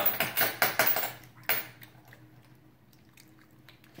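Jelly beans being chewed close to the microphone: a quick run of short clicks and mouth noises in the first second and a half.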